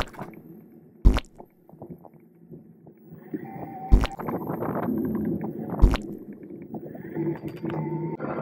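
Riding noise from a bicycle on town streets: low tyre and wind rumble, with three sharp knocks as the bike jolts, about a second in, halfway through and a little later. The rumble grows steadier and louder in the second half.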